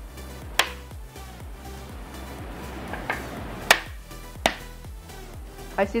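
Spine of a large knife striking a husked coconut's shell in four sharp knocks a second or so apart, cracking it open until its juice starts to leak. Background music runs underneath.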